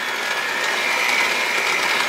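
Cuisinart seven-speed electric hand mixer running, its beaters churning flour into wet cake batter, with a steady high motor whine.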